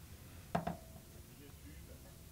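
Faint room tone broken about half a second in by one sharp, hard click with a short ringing tail, then a softer click.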